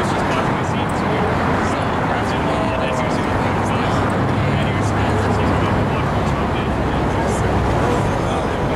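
Busy street din: indistinct voices talking over a steady hum of road traffic, with no single sound standing out.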